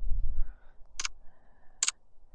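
Two short, light clicks, about a second in and again near the end: a thumb tapping a smartphone screen to step through the shot-timer app's readings.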